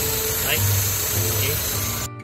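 Proton Waja MMC engine idling steadily with the air-conditioning compressor on. The idle holds stable with a replacement Evo 9 idle-control stepper motor fitted.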